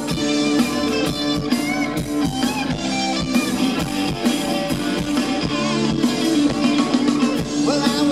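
Live rock-and-roll band playing loud and steadily, with electric guitars, fiddle and a drum kit.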